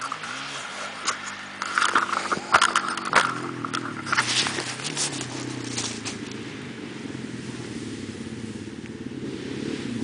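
Dirt bike engine revving up and down, its pitch shifting, with a cluster of knocks and scrapes in the first few seconds as the camera is handled and set down in the dirt. In the second half a steadier engine drone carries on.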